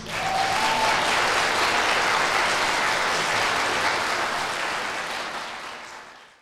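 Audience applauding, starting as soon as the string ensemble's last chord stops and fading out near the end.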